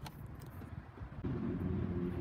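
A low rumble, then a steady low mechanical hum with a few even overtones starts a bit over a second in and holds steady.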